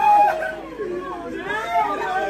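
Several people talking and calling out over one another, with a loud voiced exclamation right at the start.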